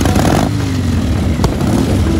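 A motorcycle engine blipped at the start, its note then sinking back over about a second, with a sharp click midway, under background music.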